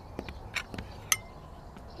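Crockery and serving utensils knocking as a plate is filled at a buffet: a few light taps and one sharp clink about a second in that rings on briefly.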